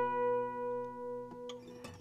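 Steel-string acoustic guitar's open B string, plucked by the index finger as the last note of a Travis-picked lick, ringing on and slowly fading away, with a lower note sustaining beneath it.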